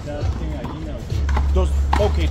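A few sharp slaps of a one-wall handball (the big blue ball) being hit by hand and striking the wall during a rally. A low rumble comes in about a second in.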